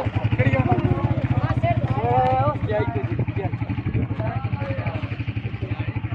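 A vehicle engine idling with a steady, rapid low putter, under several men's voices calling and talking.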